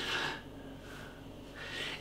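Quiet pause with faint room hiss and a soft breath that swells slightly just before speech resumes.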